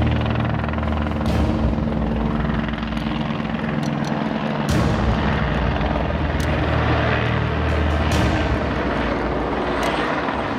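Helicopter flying overhead, with a steady low rotor beat that thins out briefly about four seconds in.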